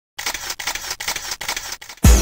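A quick, uneven run of camera-shutter clicks, about eight in under two seconds, starting a moment in.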